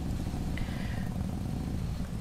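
Motorbike running steadily at cruising speed: a low engine and tyre rumble as it rides over a ribbed bridge deck.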